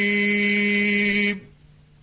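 A male Quran reciter's voice holding the long final note of a melodic (mujawwad) recitation at one steady pitch. It stops about a second and a half in, leaving only faint background noise.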